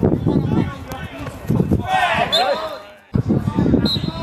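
Voices shouting across a football pitch, with several at once about halfway through, over dull thuds that fit the ball being kicked. The sound drops out for a moment about three seconds in, at an edit.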